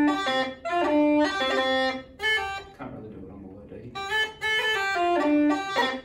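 Uilleann pipes chanter playing two short, slowed-down phrases of clear single notes with a pause between them. It is a demonstration of a delayed cut: the E is let sound for a fraction before a single cut is made, to give the note a thicker attack.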